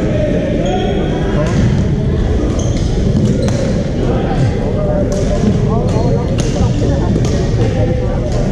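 Badminton rackets striking shuttlecocks with sharp cracks about every second, over a steady babble of players' voices echoing in a large gym.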